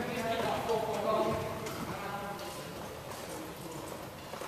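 Voices calling out in an echoing sports hall, loudest in the first second or so and fading after that, with a few scattered knocks from play on the wooden court.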